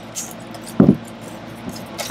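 Wire whisk beating batter in a stainless steel bowl, with light metallic clinking and scraping. A short voiced hum near the middle is the loudest moment.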